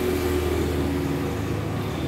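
A motor vehicle's engine running on the road close by, a steady hum.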